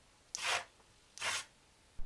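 Two short rubbing sounds about a second apart.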